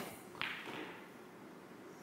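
A single short, light knock about half a second in, over quiet room tone.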